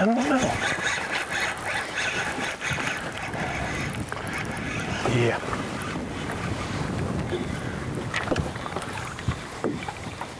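Steady wind rushing over the microphone and water noise around an open boat, with a short voice-like call right at the start.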